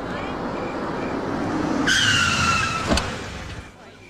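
A car approaching and braking hard, its tyres squealing for about a second with a slightly falling pitch, ending in a short knock as it stops.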